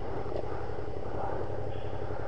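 2013 Honda CB500X's parallel-twin engine idling steadily through its aftermarket Staintune exhaust, with an even low pulse.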